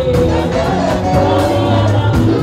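A group of women singing a gospel song together, accompanied by a band with bass and a steady drum beat.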